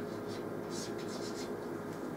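Chalk writing on a blackboard: a run of short, scratchy chalk strokes.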